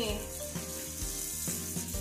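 Kitchen faucet running into a stainless steel sink, a steady hiss of water, as dishes are rinsed by hand under the stream.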